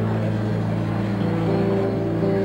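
Electric guitar playing slow, held notes over a steady low drone, the pitch of the held notes shifting every second or so.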